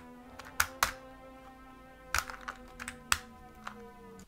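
Sharp plastic clicks and taps as a handheld toy listening gadget, the Ninja Noise Enhancer, is turned over and fiddled with in the hands, over a steady low tone.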